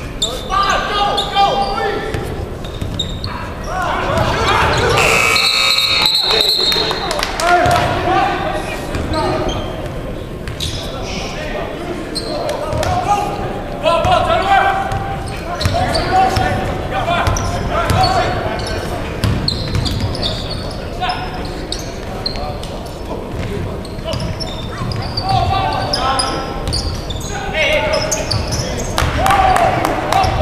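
Live basketball game in a gymnasium: a basketball bouncing on the hardwood court amid players' and spectators' voices, echoing in the hall. A brief high tone sounds about five seconds in.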